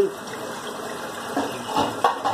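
Kitchen tap running steadily into a sink while dishes are washed, with a few light knocks of dishes near the end.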